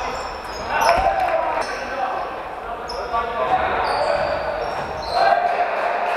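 Basketball game sounds on a wooden gym floor: sneakers squeaking in short high chirps and a ball bouncing, echoing in a large sports hall.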